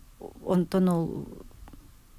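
Speech only: a woman says a short phrase about half a second in, then trails off into quieter speech.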